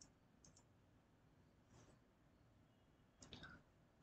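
Near silence: room tone with a few faint, short clicks, the clearest a little after three seconds.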